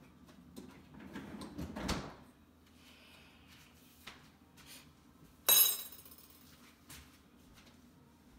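Refrigerator freezer drawer sliding shut on its runners, the rush building over about a second and stopping about two seconds in. Then a short, sharp clatter, the loudest sound, about five and a half seconds in, with a few light knocks around it.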